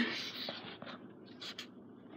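Faint scratchy handling noises and a few light taps, as of a pen and paper being handled, after a held voice dies away at the very start.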